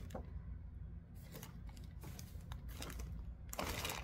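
Faint handling of paper and plastic: a few small ticks, then a louder rustle near the end as a plastic bag is handled, over a low steady hum.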